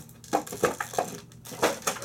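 Stiff plastic toy packaging crackling and clicking as it is handled, in about half a dozen short, sharp crackles.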